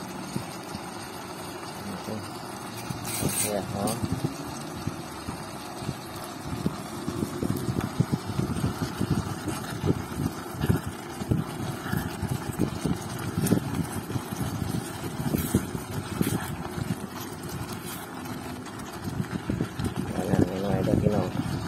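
A white ladle stirring chunks of beef and fresh dill in a nonstick electric pot, giving irregular soft knocks and wet scraping. A voice talks in the background.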